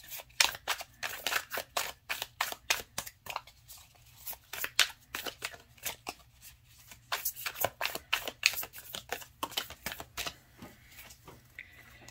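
A deck of stiff tarot cards being shuffled by hand: a string of quick, sharp card flicks and clicks, busiest in the first few seconds and again past the middle, with sparser stretches between.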